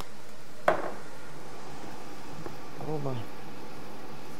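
A steady buzzing hum with one sharp knock a little under a second in and a brief low hum of a voice near the three-second mark.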